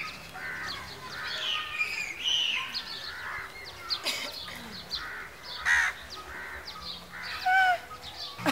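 Birds chirping and calling, many short calls that rise and fall in pitch, with a couple of louder calls about six seconds in and near the end.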